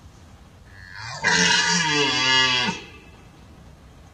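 A single deep, rasping rutting roar of a red deer stag, starting about a second in and lasting about a second and a half.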